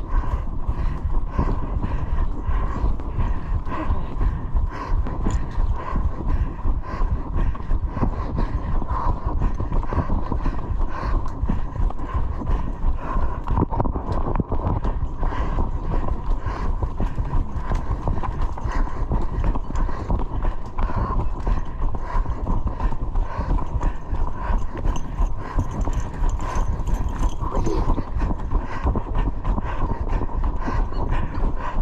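Running footsteps thudding on a dirt trail in a steady, even rhythm, with the runner's heavy breathing over them.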